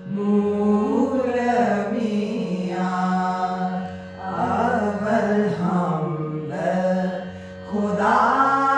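A small group of women singing a devotional song in praise of God in unison, in long held phrases with brief breaks for breath about four seconds in and near the end.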